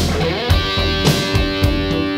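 Rock band playing an instrumental passage: electric guitar holding sustained notes over bass and drums, with a beat about twice a second.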